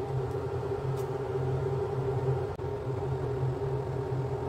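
Steady machine hum: a low drone with a higher steady tone above it, and a faint click about a second in.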